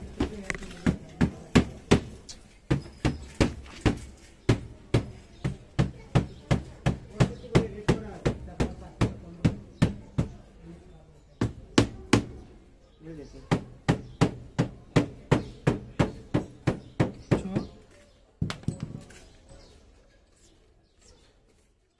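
Hammer knocking repeatedly on a large plaster-filled ceiling rose mould, to loosen the gypsum cast from the mould. A steady run of sharp knocks comes about two to three a second, with a couple of short breaks.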